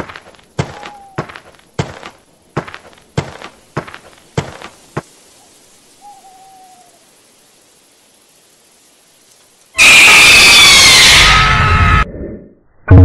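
A run of sharp knocks, about one every 0.6 s for five seconds, with a faint owl-like hoot under them and again a second later, then near quiet. About ten seconds in, a sudden, very loud, distorted screech with a falling pitch cuts in: a horror-edit jump-scare sound.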